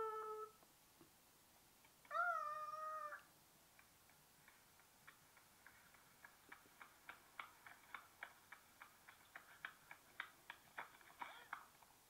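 A cat meowing twice: a short falling meow at the very start and a longer, drawn-out one about two seconds in. A run of faint ticks follows and comes quicker toward the end.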